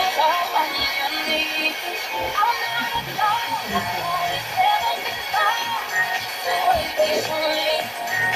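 Music with singing from an FM broadcast station on 91.6 MHz, about 100 km away, played through the speaker of a Philips analogue superheterodyne car radio-cassette.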